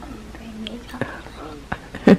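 A soft, low voice humming or murmuring without clear words, with a few sharp clicks from packaged gifts being handled, once about a second in and again near the end.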